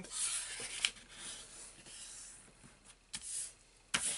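A sheet of paper being folded and rubbed flat by hand against a cutting mat: a papery rubbing that fades over the first two seconds, with a sharp tick about a second in and a short scuff near the end.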